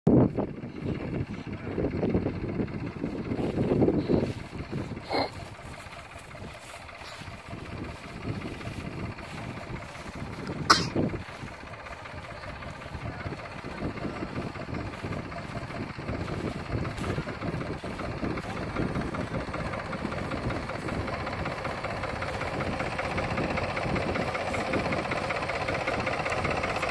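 Diesel engine of a New Holland tractor running at a slow working pace, growing gradually louder as the tractor and its bale wagon come closer. A single short, sharp sound stands out about ten seconds in.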